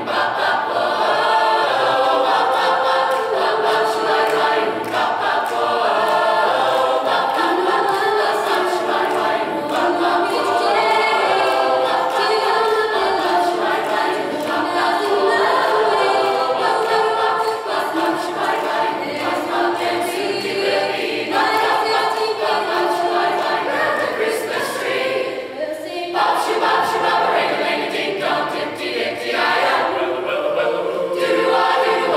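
Mixed-voice high school choir singing in harmony, with sustained notes and one short break about three quarters of the way through.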